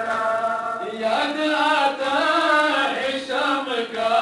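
Men's voices chanting a mourning lament together in chorus, long held phrases that slide up and down in pitch.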